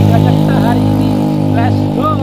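Motor vehicle engine running steadily at a constant pitch, with a few brief bits of voice over it.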